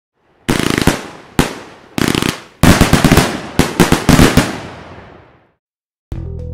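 Fireworks going off: bursts of rapid bangs and crackle, about half a second in and again near one and a half and two seconds, then a longer volley of bangs that dies away about five and a half seconds in.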